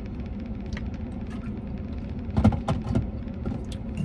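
A man drinking from a plastic squeeze bottle, with a few swallowing sounds about two and a half seconds in, over a steady low rumble inside a vehicle cab.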